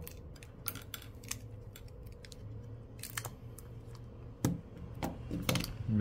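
Light scattered clicks and taps of a plastic spudger and fingers handling the opened phone's internal parts, the sharpest click about four and a half seconds in, over a faint steady hum.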